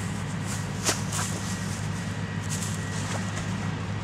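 Steady low mechanical hum from a nearby factory, with a few short rustles and clicks of a plastic bag being handled.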